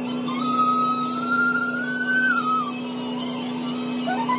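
Background music with a held melody line that glides up and holds, then falls away about two and a half seconds in, over a steady low tone.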